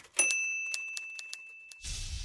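Logo sound effect: a single bright bell ding that rings and slowly fades, with light clicks ticking over it about four times a second. Near the end it is cut off by a whoosh with a low rumble.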